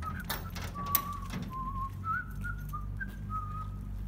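A person whistling a tune: single clear notes, some held, stepping up and down in pitch. A few light metallic clicks of keys at a padlock on a steel garage door come in the first second.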